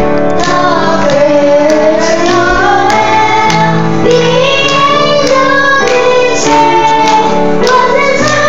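A small group of children singing a Christmas carol together, accompanied by a grand piano.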